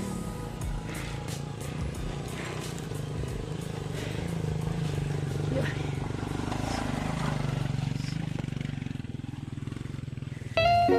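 Dirt-bike motorcycle engine running at low speed on a rocky, muddy trail, its note swelling and easing a few times as the rider works the throttle, with scattered clicks from stones and the bike's rattles.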